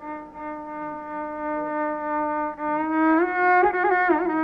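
Carnatic violin playing a melodic line in raga Yadukulakambhoji. It holds one long steady note, glides upward about three seconds in, then moves into quick wavering ornaments near the end.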